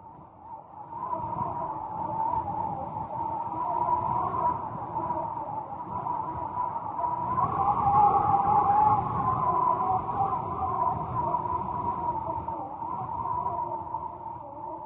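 Howling wind that swells and wavers in pitch over a low rumble, fading in during the first second or so.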